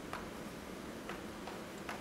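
Chalk tapping and striking against a blackboard while writing: three short sharp ticks about a second apart.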